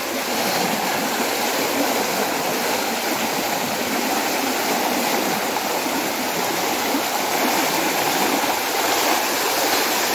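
Fast-flowing floodwater rushing through a narrow gap into a flooded street, a steady loud rush of water.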